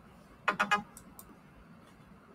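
A rapid run of three or four sharp clicks about half a second in, then two faint single clicks.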